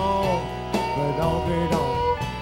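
Live country band playing an up-tempo honky-tonk song: electric guitar over bass and drums with a steady beat.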